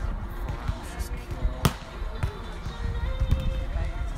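A volleyball struck by hand with a sharp slap about one and a half seconds in, and a softer hit about half a second later, over background music and voices.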